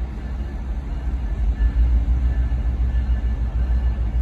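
Low, steady rumble of a slow-moving passenger train, growing a little louder about a second and a half in.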